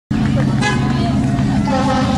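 A vehicle engine running steadily at low speed, with people's voices over it.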